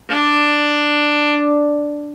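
An open D string on a violin bowed as a single steady note with no vibrato. The pitch stays flat, and the note thins and fades near the end.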